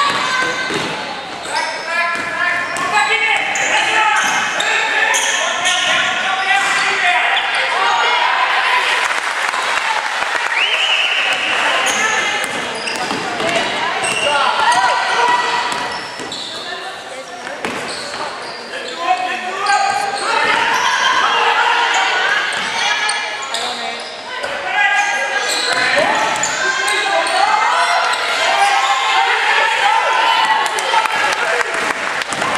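A basketball game: a ball bouncing on a hardwood court among players' and spectators' shouts and calls, echoing in a large hall. A short, steady high tone sounds about eleven seconds in.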